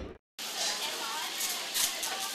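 Hot oil sizzling steadily as shredded lemongrass coated in batter is deep-fried, starting about half a second in after a brief gap.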